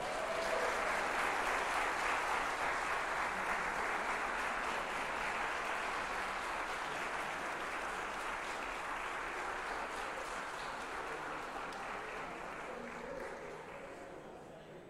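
Congregation applauding, loudest in the first few seconds and slowly dying away toward the end.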